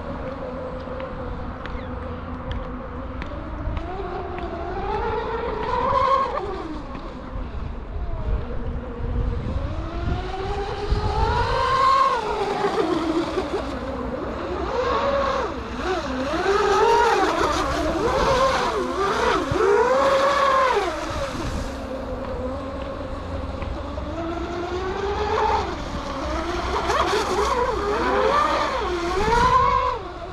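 Radio-controlled model racing boat's motor running across open water, its pitch climbing and falling again and again as the throttle is worked through the passes, loudest in a series of quick up-and-down runs in the middle. A low wind rumble lies under it.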